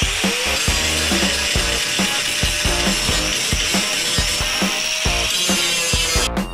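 Angle grinder spinning up at the start, then grinding steel with a steady high whine and hiss, and winding down near the end; it is smoothing the freshly welded repair on a car's rear quarter panel. Background music with a beat plays underneath.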